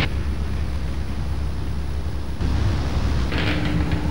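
Electric desk fan running with a steady low hum, and a short hissing whoosh about three and a half seconds in.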